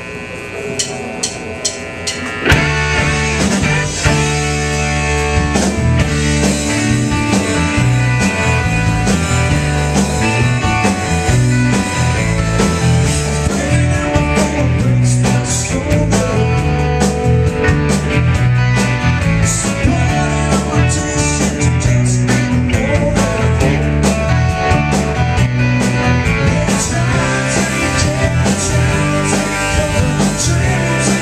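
Live rock band playing with two electric guitars, electric bass and drum kit; after a sparse opening, the full band comes in together about two and a half seconds in and plays on at a steady, loud level.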